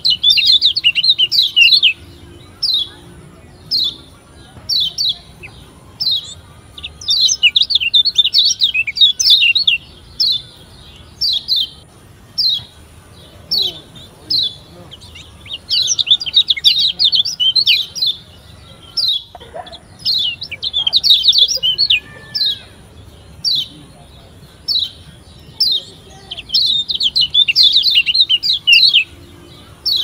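Lombok yellow white-eye (kecial kuning, a Zosterops) singing: short high chirps about once a second, broken every few seconds by runs of rapid twittering. It is a lure song played to prompt caged white-eyes to start singing.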